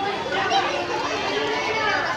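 Crowd chatter: many voices talking over one another.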